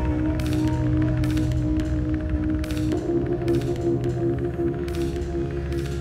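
Bowed cello holding long sustained notes over an ambient backing with light, regularly spaced percussive hits; the harmony moves to a new chord about halfway through.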